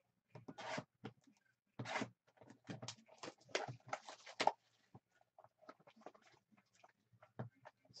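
Shrink-wrap being slit and torn off a 2016 Topps Strata baseball card box and the box opened, a run of short crinkling, tearing bursts. They are densest through the first half, then give way to lighter rustles and clicks as the box is opened and a foil pack drawn out.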